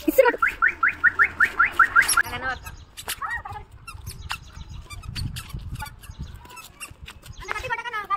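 A bird calling a rapid series of about ten short rising notes, about five a second, which stops about two seconds in.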